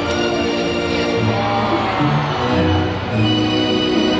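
Music with sustained chords, at an even level.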